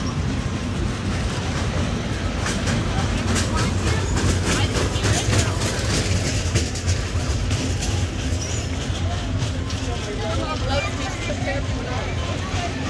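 Fairground noise: a small caterpillar-style kiddie roller coaster's train rattling and clacking along its steel track over a steady low hum. Crowd voices come through near the end.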